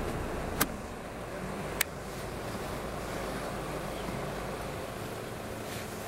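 Car engine idling steadily, a low even rumble, with two sharp clicks about half a second and nearly two seconds in.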